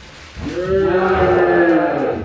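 A single long held vocal 'aah' note, like a sung or shouted tone, starting about half a second in and lasting about a second and a half, rising slightly in pitch and then falling away, with a low rumble underneath.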